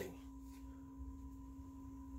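Quiet room tone in a pause between speech, holding two faint steady pure tones: a low hum and a higher, thin whine.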